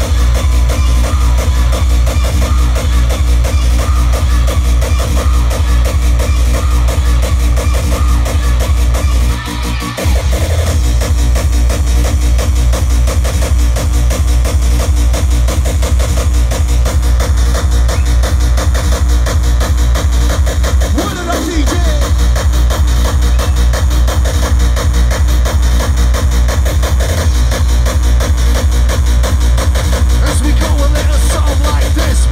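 Loud hardcore gabber dance music from a live DJ set, with a steady fast, heavy kick drum that drops out briefly about a third of the way in and again past two-thirds in.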